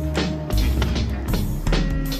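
Intro music with deep bass and percussive hits.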